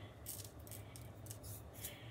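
Faint, short ticks and rustles of a small plastic shaker of fine glitter (diamond dust) being shaken and tapped.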